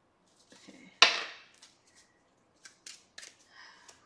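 Tarot cards being handled: one sharp snap about a second in, then a few light clicks near the end.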